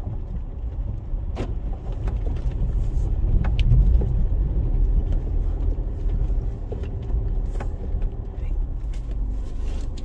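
Land Rover Freelander 2 driving slowly through a shallow ford and onto a dirt track, heard from inside the cabin: a steady low rumble of engine and tyres, loudest about four seconds in, with scattered short clicks.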